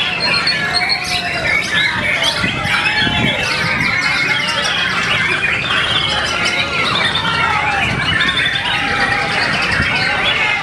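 White-rumped shama (murai batu) singing: a dense, unbroken stream of fast whistled phrases and chattering notes, with murmuring voices of a crowd behind.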